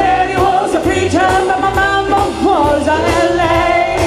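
Live blues band: a woman sings a sustained, bending lead vocal over electric guitar and drums.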